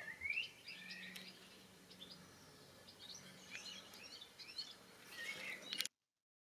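Faint birdsong: scattered chirps and a few short rising calls, with a faint low hum in the first part. The sound cuts off suddenly just before the end.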